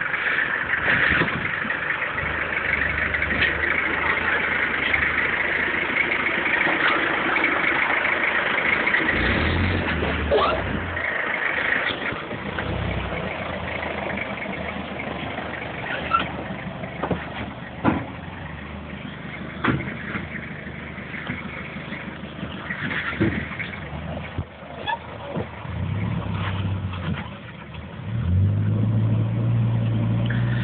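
A Toyota Hilux 4WD's engine running at low speed as it crawls over rock ledges, with the revs rising twice, briefly about ten seconds in and again near the end. Sharp knocks and scrapes sound through the middle as it climbs over the rocks, and a steady hiss sits over the first ten seconds or so.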